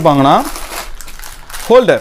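Clear plastic packing bag crinkling and rustling as it is pulled out of a cardboard box, fairly quiet, in the gap between a man's words.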